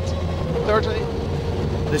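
In-cabin sound of a Subaru Impreza WRC's turbocharged flat-four engine running at a steady high pitch under way, over a constant rumble of tyre and road noise.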